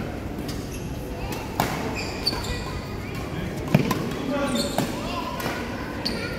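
Badminton rackets striking the shuttlecock in a doubles rally: a run of sharp hits, about five, the loudest a little before four seconds in, ringing slightly in a large hall.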